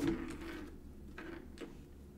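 A few soft clicks and light handling noises over a low steady hum, with a sharper click right at the start.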